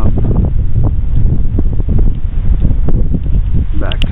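Wind buffeting the microphone outdoors: a loud, continuous low rumble with uneven gusty swells.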